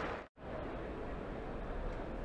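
Steady, even background hiss of a cricket ground's ambience and field microphones, with no commentary. It follows a momentary drop-out to silence at an edit cut near the start.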